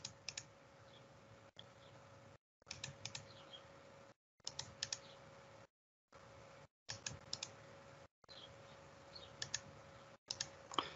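Faint clicking of computer mouse buttons, in little groups of two or three about every two seconds, as line after line is picked and placed in a CAD program.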